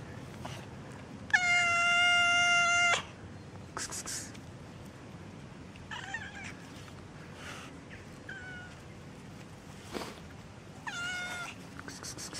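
Cats meowing: one loud, long, drawn-out meow about a second in, then a few shorter, quieter meows later on.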